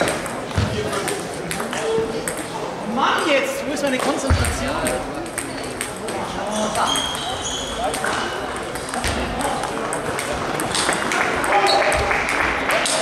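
Table tennis rally: the ball clicks again and again off the rubber bats and the table top, with people talking in the hall.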